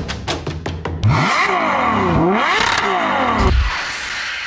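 A quick run of sharp hits, then a recorded engine revving with its pitch falling and climbing again before it cuts off near the end, with music under it: an intro sound effect.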